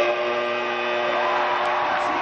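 Arena game horn going off suddenly and holding a steady, multi-tone blare for about two seconds over crowd noise: the final buzzer ending the game.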